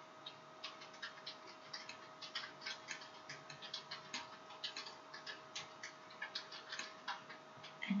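Faint, irregular clicking of a computer mouse, several clicks a second, over a faint steady hum.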